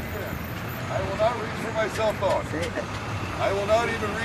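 Road traffic on a city street, a steady low rumble, with indistinct voices of people nearby a few times.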